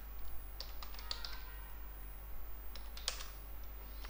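Faint computer keyboard typing: a short run of keystrokes about a second in, then a single keystroke around three seconds in.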